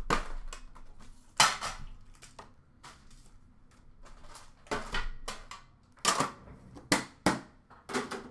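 Sharp clacks and knocks of a metal trading-card tin being handled: the lid coming off and the tin and its card packs set down on a glass counter. The loudest knock comes about a second and a half in, and a quick run of them follows in the second half.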